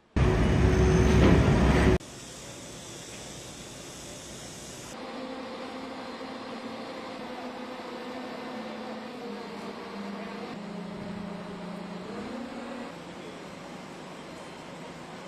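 Construction machinery's diesel engine running steadily, its pitch dropping about ten seconds in and rising again near the end. It follows a loud burst of noise in the first two seconds.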